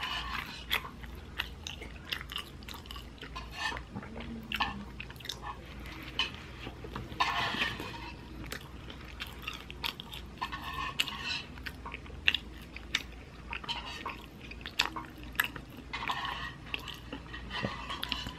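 Close-miked person chewing mouthfuls of a soft-bun hamburger, with irregular short mouth clicks throughout and two louder stretches of chewing, one midway and one near the end.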